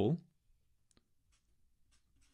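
The tail of a spoken word, then faint clicks and light scratching of a felt-tip marker being handled and set to paper.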